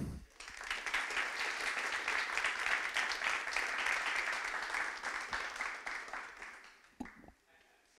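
Audience applauding, dense clapping that dies away about six to seven seconds in.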